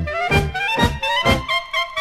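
Polka played by a dance orchestra: a saxophone melody over bass and accompaniment chords on a steady beat of about two a second. The accompaniment drops out about one and a half seconds in, leaving the melody line on its own.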